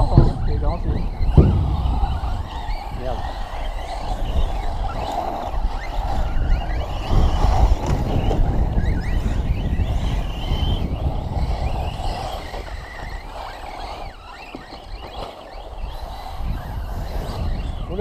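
Large-scale 6S brushless electric RC off-road buggies running on a dirt track, their motors whining up and down as they accelerate and brake, under steady wind buffeting the microphone. A sharp knock comes about a second and a half in.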